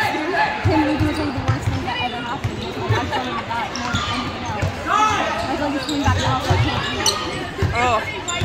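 Basketball bouncing on a hardwood gym floor during play, a series of irregular low thumps that echo in the large gym, under the chatter and calls of the crowd and players.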